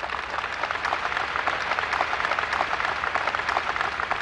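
Large audience applauding, a dense, steady clatter of many hands clapping.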